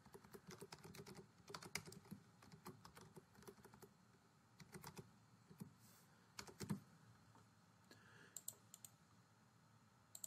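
Faint computer keyboard typing: a quick run of keystrokes over the first few seconds, then scattered key presses and clicks.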